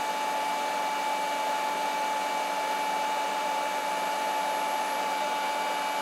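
Two cordless brushless rotary polishers, a Hercules 20V and a Flex, running unloaded at full speed with their triggers locked on: a steady motor whine with a strong, even high tone, the Hercules higher-pitched and more piercing on the ear.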